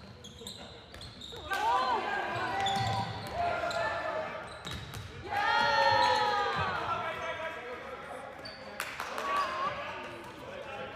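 A handball bouncing and knocking on a hardwood gym floor, with shoes squeaking and players shouting, all echoing in the hall. The loudest stretches come about one and a half seconds in and again around six seconds.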